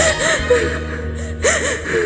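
A woman sobbing, short rising-and-falling crying sounds in two bouts, over the last of a song's backing music, whose bass fades out near the end.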